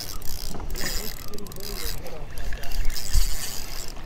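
Wind buffeting the camera microphone in a steady low rumble, with the sea below and faint voices in the background.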